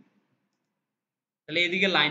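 A man's voice trailing off, then a stretch of dead silence, then his speech resuming about a second and a half in.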